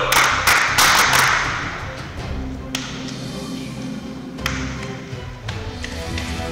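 A short round of clapping by a small group in the first second or so, fading out, then background music with sustained tones.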